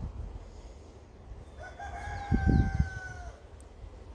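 A rooster crowing once, one long call of nearly two seconds that dips slightly in pitch at the end, starting about one and a half seconds in. A few low thumps come during the crow and are the loudest sound.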